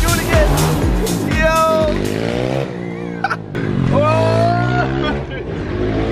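A small motorbike engine revving, its pitch rising and falling, with voices and music over it.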